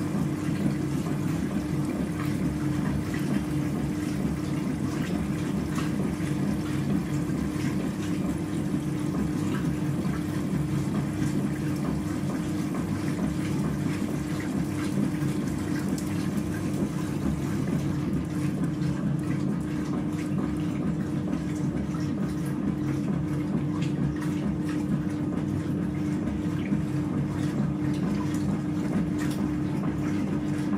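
AEG Öko Lavamat 6955 Sensorlogic front-loading washing machine tumbling wet laundry during its second rinse: water sloshing in the drum over a steady hum.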